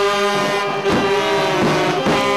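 Vietnamese funeral brass band of trombones, saxophones and trumpet playing loud held notes in harmony, the chord shifting about a second in.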